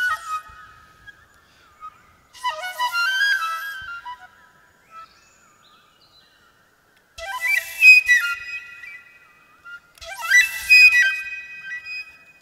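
Solo flute playing short phrases of quick runs with an airy, breathy tone, in three bursts (about two seconds in, about seven seconds in and about ten seconds in) separated by pauses.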